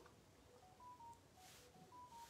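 Near silence with faint electronic beeps: short single tones at a few pitches forming a rising four-note phrase, repeated about a second later.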